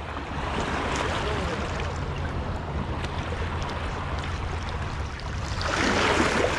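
River water churning and rushing at the edge of a muddy bank, mixed with wind rumble on the microphone. The rush swells louder near the end.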